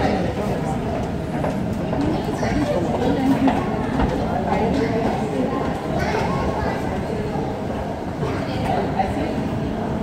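Indistinct background voices of people talking, over a steady din of background noise.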